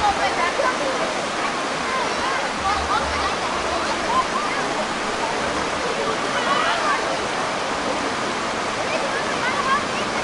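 Shallow creek water rushing steadily over smooth rock, with voices in the background.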